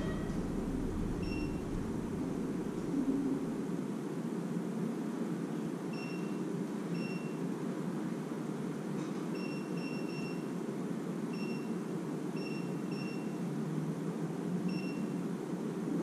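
Digital door lock keypad beeping once per key press as a password is entered: about a dozen short, identical beeps at an uneven pace, several in quick succession near the middle. A steady low hum runs underneath.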